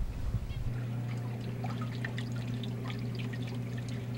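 Water trickling and bubbling in pet-store aquarium tanks, with scattered small splashes. A steady low hum sets in under it about a second in.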